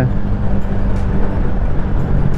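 RT250 motorcycle under way: the engine runs steadily under heavy wind rush on the microphone. There are no audible surges or cut-outs.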